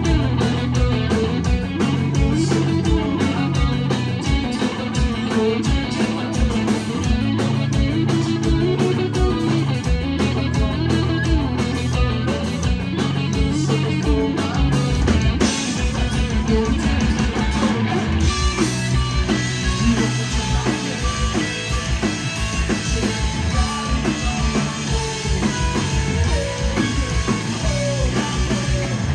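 Rock band playing live: distorted electric guitars over a drum kit beating out a steady rhythm. From about halfway through, bright cymbal ringing comes in over the drums.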